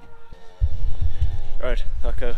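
A few held musical tones fade out. About half a second in, a loud low rumble of wind on the microphone starts suddenly, and a man's voice begins under it near the end.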